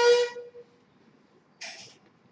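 A loud horn-like tone, one steady pitch lasting about half a second, followed near the end by a brief hissy burst, played from the video started on the laptop.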